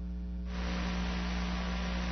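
Steady mains hum with hiss on a telephone line; the hiss grows louder about half a second in.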